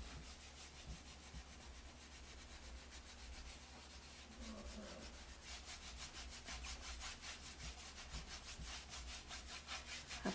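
Stiff paintbrush bristles scrubbing paint onto a wooden plank: a faint, scratchy rubbing in quick repeated strokes, several a second, growing clearer in the second half.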